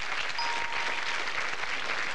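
Studio audience applauding a correct answer. About half a second in, a short steady electronic tone sounds under the clapping as the letter board changes a hexagon.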